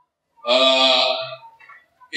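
A man's voice through a handheld microphone holding one drawn-out syllable for about a second, starting about half a second in.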